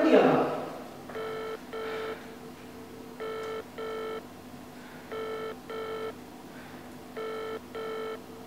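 A phone call ringing in a double-ring pattern: four pairs of short beeps, one pair about every two seconds. The call is placed to a mobile phone.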